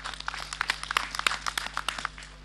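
Scattered applause from a crowd: many irregular, sharp hand claps following the end of a speech.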